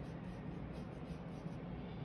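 Faint rubbing of a paintbrush stroking paint onto paper.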